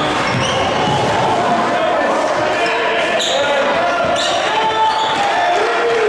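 Live basketball game sound in a gymnasium: the ball dribbled on the hardwood court, with brief high squeaks from sneakers, under a steady mix of spectators' and players' voices echoing in the hall.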